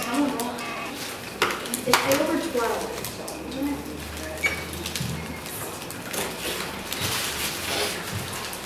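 Classroom chatter: students' voices in the background, with scattered sharp clicks and the crinkling of crumpled paper sheets being handled and written on.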